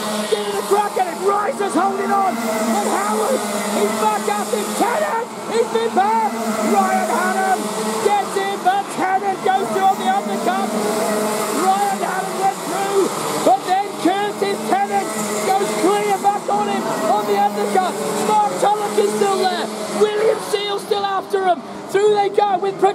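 A pack of Rotax Max 125 single-cylinder two-stroke kart engines racing past, many engines overlapping, their pitch repeatedly rising under acceleration and falling off for the corners.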